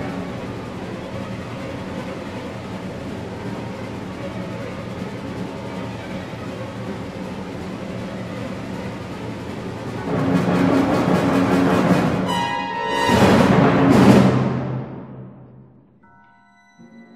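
Contemporary orchestral music: a dense, sustained full-orchestra texture that swells about ten seconds in, surges to a loud climax a few seconds later, then dies away near the end.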